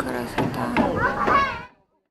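Voices of people chattering, ending abruptly about three quarters of the way through in a sharp cut to dead silence.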